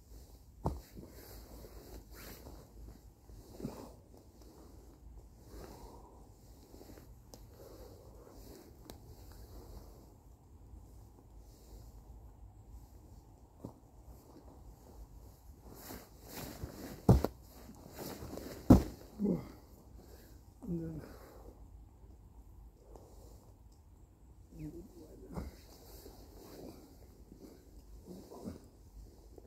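A man exercising vigorously on dry fallen leaves: feet scuffing and rustling in the leaves, with forceful breaths and short grunts. Two sharp smacks about a second and a half apart, just past halfway, are the loudest sounds.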